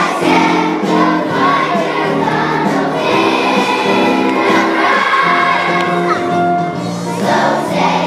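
A children's choir singing a song together over instrumental accompaniment.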